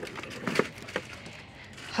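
A few light knocks and handling noises as small decorative sign plaques are moved and pulled from a store shelf, the clearest knock about half a second in.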